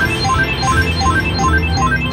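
Lil Lady video slot machine playing its electronic chime tune, a fast repeating run of short beeps stepping up in pitch, as the win meter counts up during the free-spins bonus.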